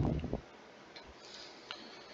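A man's voice trailing off at the start, then quiet room hiss with one faint sharp click near the end.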